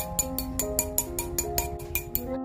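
Background music with a melody, over rapid light hammer taps on a copper ring held on a steel mandrel, about seven taps a second, texturing the ring's surface.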